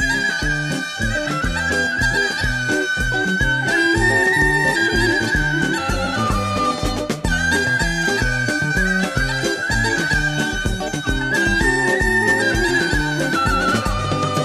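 Instrumental Bulgarian folk music for a northern-Bulgarian (severnyashko) horo dance: a high, held lead melody over a steady pulsing beat in the bass.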